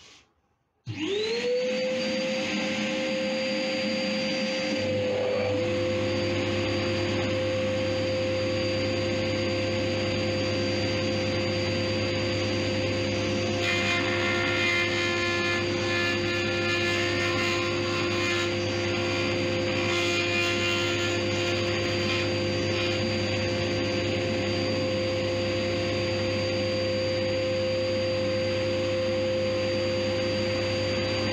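Workshop dust extractor starting up about a second in, its motor whine rising quickly to a steady pitch. A few seconds later a second machine motor joins with a deeper steady hum, and both keep running evenly.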